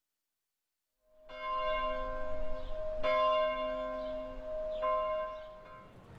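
A bell struck three times, about two seconds apart, after a second of silence. Each stroke rings on and fades.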